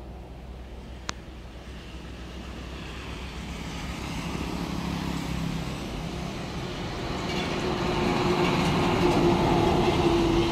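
A truck approaching on the road, its engine and tyre noise growing steadily louder over several seconds, with a steady engine hum as it draws close near the end. A brief click about a second in.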